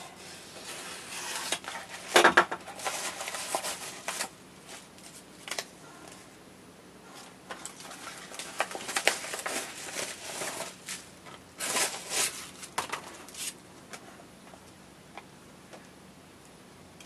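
A padded paper mailing envelope being slit open with a knife and unpacked. Irregular rustling, tearing and crinkling of paper and plastic, loudest about two seconds in, with bubble-wrapped parts being handled near the end.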